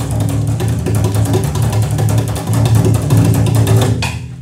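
Double bass played in free improvisation: low notes ringing under a dense run of quick, sharp strokes on the strings and body.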